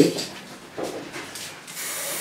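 Aerosol spray-paint can hissing in a short steady spray of red paint, starting near the end.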